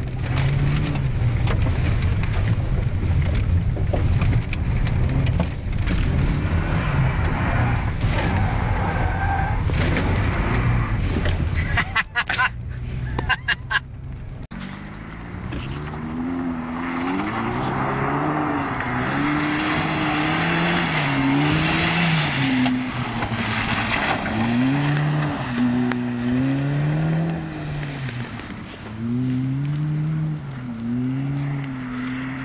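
Volvo 740 engine at high revs, first as a steady loud drone from inside the car while it churns through mud. After a break with a few clicks about halfway through, it is heard from outside, its revs swinging up and down every couple of seconds as it is driven hard across the muddy field.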